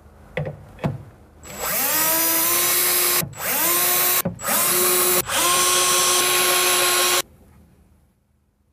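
Cordless drill drilling holes through a steel runner carriage into a cabinet floor: after two light knocks, the motor spins up with a rising whine and runs steadily. It stops briefly three times and spins up again each time, then cuts off near the end.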